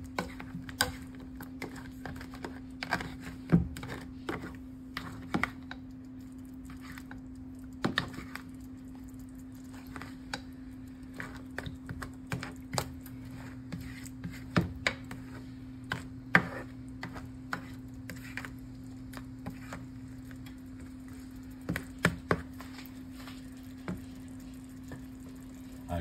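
Crab pieces simmering in a thick coconut curry sauce in a pan, with irregular sharp clicks and pops from the sauce and a spoon knocking against the pan, over a steady low hum.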